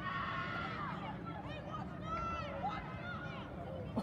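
Distant voices of players and spectators calling out over a steady low background rumble.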